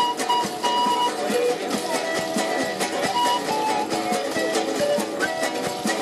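Andean one-man band: a strummed guitar and charango under a panpipe melody of held notes that step from pitch to pitch.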